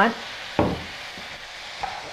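Zucchini and yellow summer squash sizzling in a wok, just splashed with sherry, while a spatula stirs them. A single sharp knock comes about half a second in.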